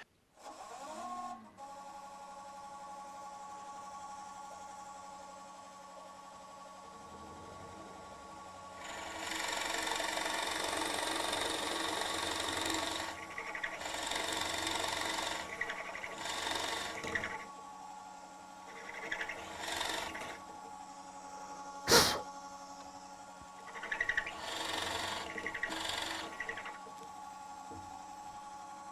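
Drill press motor spinning up and running with a steady hum while a half-inch Forstner bit bores into a wooden guitar neck blank: a long stretch of cutting noise, then several shorter bursts as the bit is fed in and backed out to clear chips. One sharp knock comes about three quarters of the way through.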